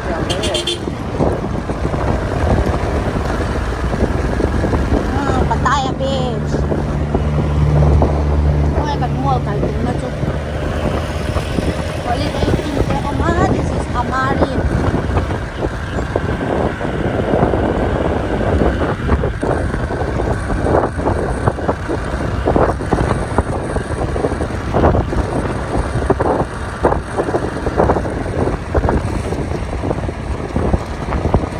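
Road noise while riding along a road: wind rushing over the microphone and traffic, with a vehicle engine running steadily and loudest from about five to ten seconds in.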